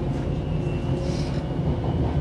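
Inside a moving Gautrain carriage (a Bombardier Electrostar electric train): a steady low running rumble, with a faint high whine in the middle.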